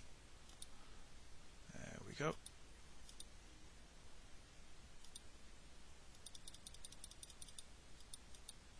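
Faint computer mouse clicks. A few single clicks are followed near the end by a quick run of about ten clicks, as a time setting is stepped up with a spin-box arrow.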